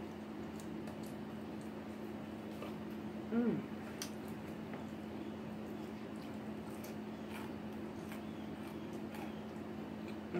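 Close-miked chewing and mouth sounds of someone eating fried food: soft wet squishes and small clicks. A short vocal sound falls in pitch about three and a half seconds in, over a steady low hum.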